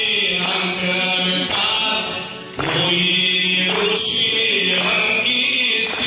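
Group of voices singing an Aromanian folk song in several parts over a held low drone note. The singing breaks briefly about two and a half seconds in, then resumes.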